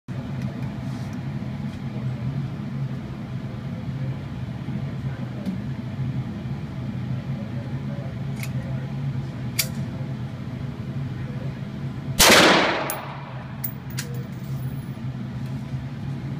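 Steady low hum with a few faint clicks, then a single AR-15 rifle shot about three-quarters of the way in, with a long echo off the walls of an indoor range.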